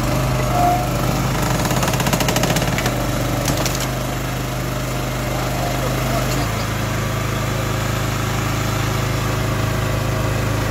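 Honda GX390 single-cylinder petrol engine of a Krpan CV18 log splitter running steadily. A rapid rattle of clicks comes about two seconds in, and the engine note steps slightly lower about six seconds in.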